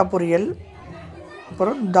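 Speech only: a voice says two short phrases with a pause of about a second between them.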